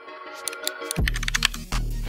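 Keyboard typing clicks mixed into intro music: a few scattered clicks at first, then a deep bass note comes in about halfway with a quick run of clicks.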